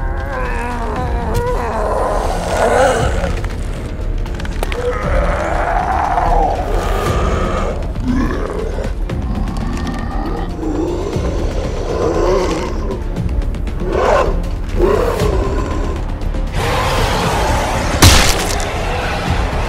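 Background music with a steady low drone, overlaid with a monster's recurring growls and roars that waver up and down in pitch. A loud noisy burst comes near the end.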